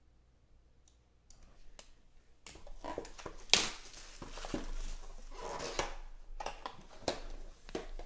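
Clear plastic shrink-wrap being torn and peeled off a small box holding an encased trading card: a few light clicks, then crinkling and tearing, with a sharp snap about three and a half seconds in.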